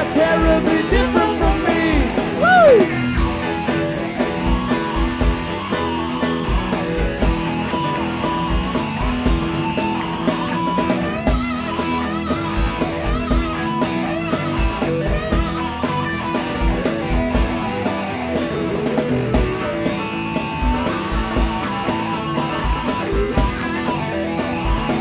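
Live rock band playing an instrumental passage: an electric guitar takes the lead over keyboards, bass and a steady kick-drum beat. A high sliding line rises and falls in the first few seconds.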